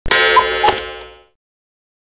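Short electronic intro sound effect: a bright pitched tone starts at once, with two quick blips and a click in it, and fades out after just over a second.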